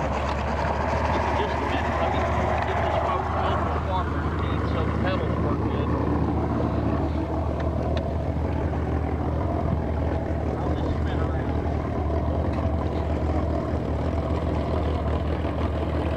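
Small Mercury outboard motor running steadily with a low hum, pushing a small boat along through the water.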